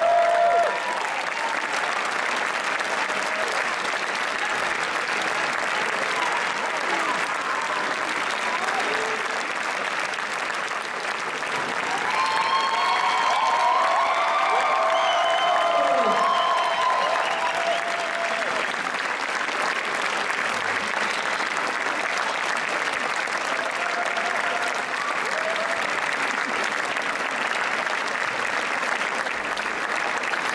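Sustained audience applause, steady throughout, with a few voices calling out above it around the middle.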